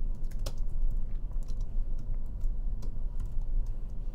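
Typing on a computer keyboard: a quick, irregular run of keystroke clicks over a low steady hum.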